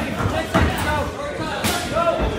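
Kickboxing strikes landing: two sharp smacks, about half a second in and near the end, over the chatter of the crowd.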